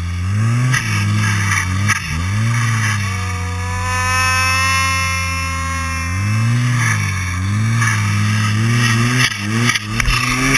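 Turbocharged Arctic Cat 1100 snowmobile engine ridden on the throttle, its pitch swinging up and down with repeated revs. A high steady whine sits over it for a few seconds mid-way, and a few sharp knocks come near the end.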